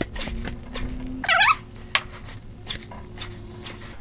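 A foam grip cover being pushed and twisted onto a soapy motorcycle throttle grip: soft rubbing and scuffing, with one short wavering squeak a little over a second in as the foam drags on the grip.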